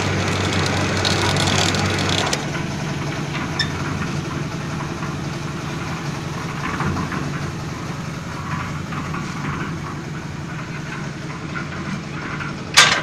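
A construction material hoist's winch motor runs steadily as it hauls a loaded trolley up on its cable. The hum drops and changes tone about two seconds in.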